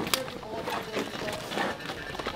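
A group of football players' voices talking and calling out over each other, with scattered sharp clicks and knocks as the players in helmets and pads move about.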